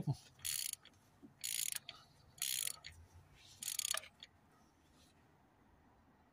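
Socket ratchet fitted with a 27 mm socket clicking in four short bursts about a second apart as it undoes the oil filter housing cap on a 1.6 HDi diesel engine.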